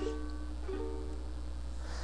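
Ukulele chords ringing out: one chord sounds at the start and a second about two-thirds of a second in, each left to ring and fade.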